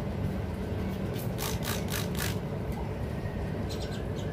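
A quick run of about five sharp kissing squeaks made with pursed lips, a little over a second in, over a steady low background rumble.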